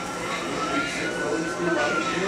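A siren wailing, its pitch rising slowly and starting to fall near the end, under low background voices.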